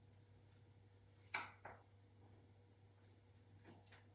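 Near silence: room tone with a steady low hum. A few faint clicks break it, one a little over a second in with a weaker one just after, and another near the end, as small beads and bone pieces are handled and threaded onto sinew.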